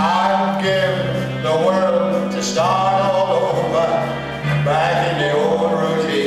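A male vocalist singing an old variety-show song in phrases, backed by a live band whose bass steps to a new note about every second.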